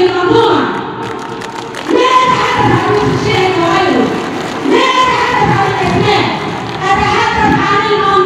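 A woman's voice making a speech through a hand-held microphone and public-address system. She speaks in emphatic phrases of a second or two, with short pauses between them.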